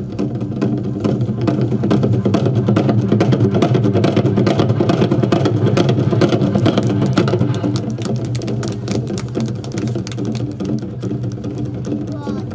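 Ensemble of Korean barrel drums (buk) played in a fast, continuous roll, swelling louder about two seconds in and easing off after about eight seconds.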